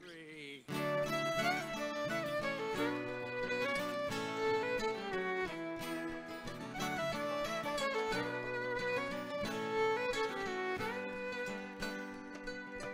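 Acoustic bluegrass-style string band playing the instrumental intro of a song, the fiddle carrying the melody over acoustic guitar, banjo, mandolin and double bass; the music starts about half a second in.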